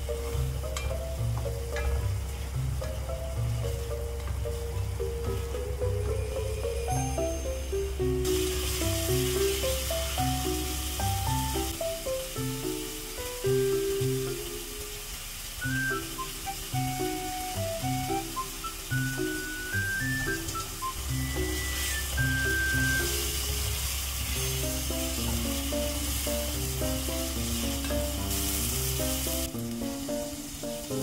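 Background music with a stepped melody and bass line. From about eight seconds in, spice paste is sizzling as it fries in a pot.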